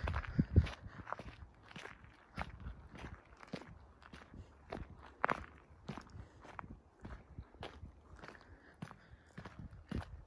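Footsteps walking on a wet gravel road, about two steps a second.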